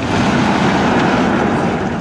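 Large wooden sliding barn door rolling along its track as it is pulled by a rope, a steady rumble lasting about two seconds.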